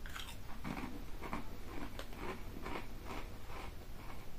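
A person biting into and chewing a Seabrook potato crisp in their mouth, a run of short crisp crunches about twice a second.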